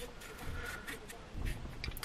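Kitchen knife paring the skin off a cucumber by hand: faint scraping strokes, a few in quick succession in the second half.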